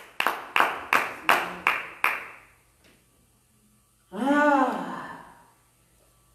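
Hand claps, about three a second, for about two seconds, then one drawn-out vocal exclamation of falling pitch from a woman's voice.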